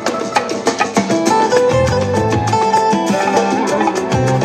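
Recorded instrumental Latin jazz with acoustic guitars, bass, drums and hand percussion, a quick steady percussion pattern under a plucked guitar melody.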